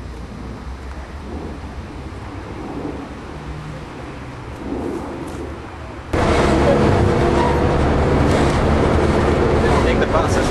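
A low steady rumble, then a sudden cut about six seconds in to the louder inside of a running bus: engine drone with several steady tones over road noise.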